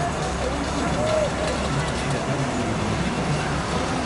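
Pickup truck engine running as the truck rolls slowly past towing a parade float, a steady low rumble, with voices over it.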